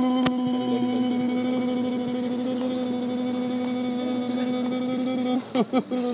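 A man's voice holding one long, steady note on an open 'ooh' vowel. It breaks off briefly near the end with a few short sounds, then the note picks up again.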